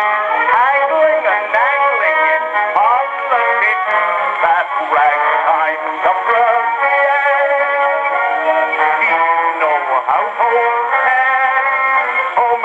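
An early acoustic 78 rpm record of a ragtime song, a male voice with band accompaniment, playing through a horn gramophone. The sound is thin and narrow, without deep bass or high treble.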